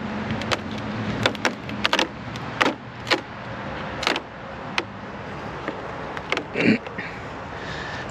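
A metal hive tool knocking and scraping at the edge of a polystyrene hive lid, giving a series of sharp, irregular clicks over a low steady hum.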